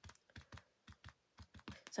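Faint, irregular light taps and clicks, several a second, from a clear acrylic stamp block and rubber-stamp ink pad being handled on a desk.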